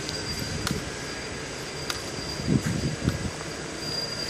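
Steady background noise of a large big-box store, an even hum and rumble, with a few soft low thumps in the second half.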